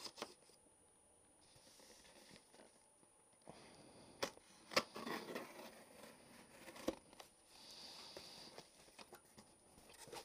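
Faint sounds of a cardboard shipping box being opened: a tool scraping and slitting along the packing tape, a few sharp clicks, and the cardboard flaps being handled.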